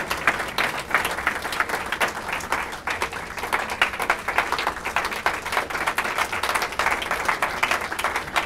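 Audience of diners applauding a speech, many hands clapping steadily with no break.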